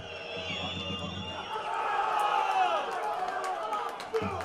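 Football crowd cheering and shouting, many voices at once, swelling about two seconds in.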